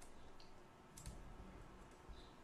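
Near silence: room tone with a few faint, brief clicks.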